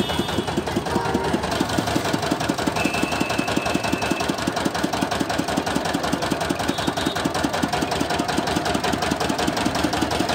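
The engine of a street sugarcane juice crusher running steadily, with a rapid, even chugging beat.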